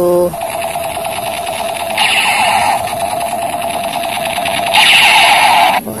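Battery-powered toy AK-47 firing its electronic rapid-fire sound effect, one continuous fast rattle of about five seconds that gets louder and brighter twice, about two seconds in and near the end.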